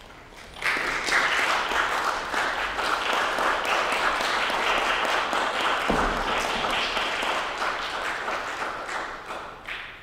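Audience applauding, starting suddenly about a second in and dying away near the end, with a brief low thump about six seconds in.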